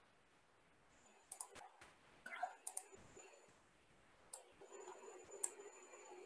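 A few faint, scattered computer mouse clicks over near-silent room tone.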